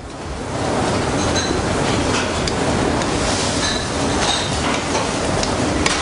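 Lamb ragout simmering in a copper pan as it is stirred: a steady rushing noise that builds over the first second, with a few faint metallic clinks.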